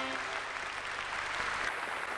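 Audience applauding, a dense steady clatter of many hands, as the band's last held note cuts off just after the start.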